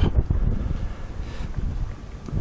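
Wind buffeting the camera's microphone: an irregular low rumble that eases off toward the end.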